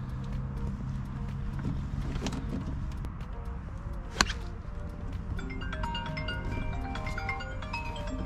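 Background music plays throughout. About four seconds in, a single sharp crack of a golf club striking the ball on a full swing is the loudest sound.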